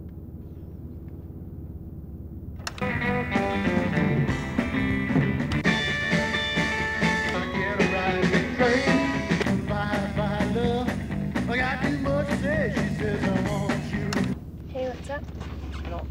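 A rockabilly song with a singer playing on a car radio. It comes in suddenly about three seconds in and drops away sharply near the end, over a steady low hum.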